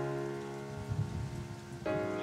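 Sustained synth-pad chords from a worship-song backing track, held steady and changing chord near the end, over an even hiss.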